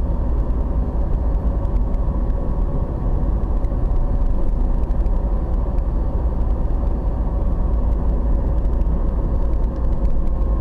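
Steady road noise inside a vehicle cruising on a paved highway: a continuous low rumble of tyres and engine with a faint, even hum above it.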